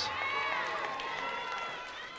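Audience members cheering with high-pitched whoops and shouts for a graduate, slowly fading.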